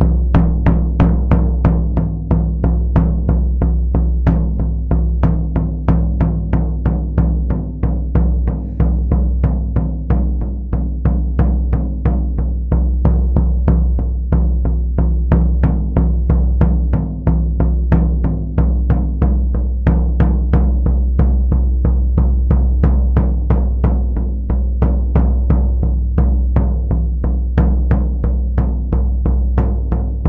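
Floor tom from a drum kit struck with a felt-headed mallet in a steady, even pulse of three beats per second, shamanic-drumming style. Each stroke leaves a deep ringing low tone that carries into the next.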